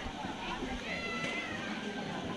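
A pig squeals once, a high drawn-out cry of under a second that drops at its end, over crowd chatter.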